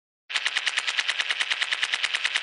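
A rapid, even rattle of short sharp clicks, about twelve a second, starting a moment in, like a machine-gun sound effect.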